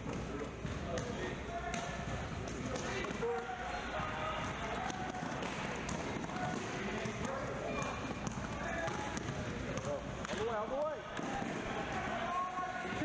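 A basketball dribbled on a hardwood gym floor during play, under a steady hubbub of indistinct voices from players and spectators in the echoing gym.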